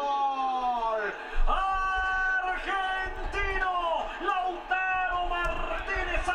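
A man's voice yelling in long drawn-out notes, the first one slowly falling, over a steady low rumble.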